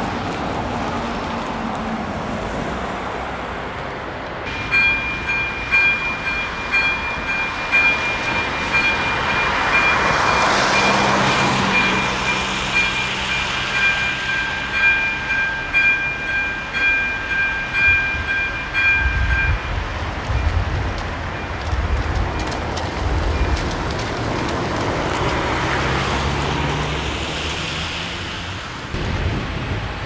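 AŽD 97 level-crossing warning signal ringing its electronic bell, a pulsed high tone that starts about four seconds in and stops about twenty seconds in. A train rumbles over the crossing while the bell rings.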